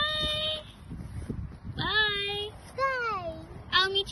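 A child's high voice making drawn-out, sing-song wordless calls: three long notes, the third gliding down in pitch, then a few quick short syllables near the end.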